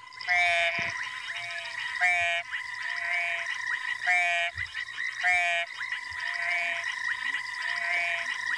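Recorded ornate frog call played through a phone speaker: four loud calls at intervals of about one to two seconds, with shorter, fainter notes in between, over a steady background drone.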